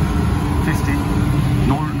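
Water-cooled Stulz commercial air-conditioning unit running: a steady low machine hum with a constant tone.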